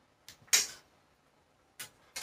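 A cooking utensil clinking and scraping against a pot on the stove: a light click, a louder scrape about half a second in, and another sharp clink near the end.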